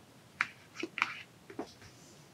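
Knitting needles clicking against each other as stitches are worked: about five short, sharp clicks in quick irregular succession.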